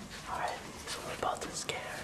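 Whispering: breathy, hissy speech with sharp 's' sounds and no full voice.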